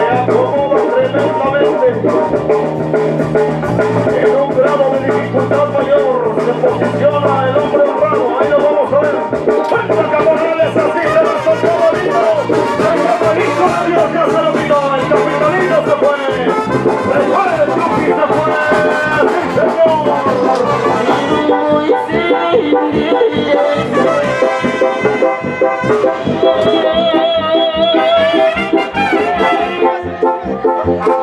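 Brass band music with trumpets and trombones over a steady low beat.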